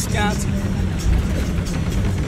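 Steady engine and road rumble of a moving local bus, heard from inside the cabin, with a voice briefly just after the start.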